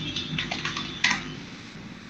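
Computer keyboard keys clicking, a few strokes in the first second with the sharpest about a second in, over faint background hiss.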